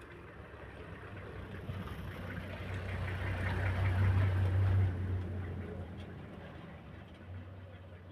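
A motor engine running with a low steady hum that grows louder to a peak about four to five seconds in, then fades away.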